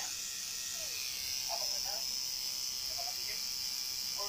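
Electric tattoo machine buzzing steadily as it works on skin, with faint voices in the background.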